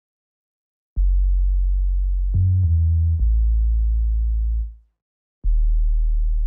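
Deep synthesized bass notes from an FL Studio beat. A held low note comes in about a second in and steps to new pitches twice. It fades out near the five-second mark, and another low note starts about half a second later.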